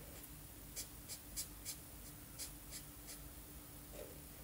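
Felt-tip marker scratching on paper in a run of about seven quick, short strokes between one and three seconds in, faint, as a small area is coloured in.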